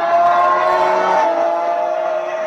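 Go-kart engine noise played back through a loudspeaker: a high, steady whine whose pitch creeps up and then drops back about a second in, like an engine revving and easing off.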